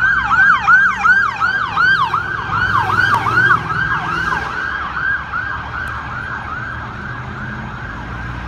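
Emergency siren on a fire department duty chief's vehicle in fast yelp mode, a tone rising and falling about three to four times a second. It fades through the second half as the vehicle moves away, over low traffic engine rumble.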